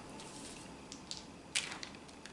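Two small dice thrown onto a paper game board laid on a wooden floor: a couple of light clicks, then a louder clatter about a second and a half in as they land and tumble to a stop.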